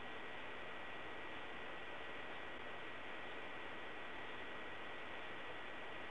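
Steady faint hiss of the recording's background noise, with a thin steady high whine running under it; nothing else happens.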